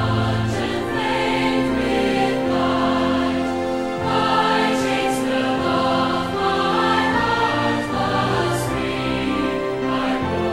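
Choir singing a hymn with musical accompaniment.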